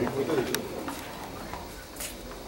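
Indistinct low voices in a small room, fading out within the first second, with a single sharp click about half a second in.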